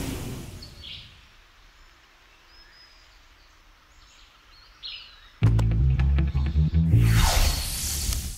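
Cartoon sound effects: a magic teleport shimmer fades out, leaving quiet jungle ambience with faint bird chirps. About five seconds in, a sudden loud low rumble starts, and near the end a rising magical whoosh comes in as a swirling portal opens.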